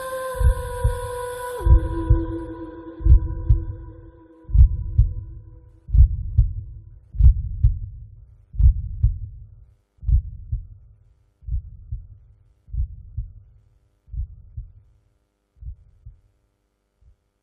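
Heartbeat sound effect: low double thumps repeating about every second and a half, slowly fading out. Over the first few seconds a held musical tone drops in pitch and fades away.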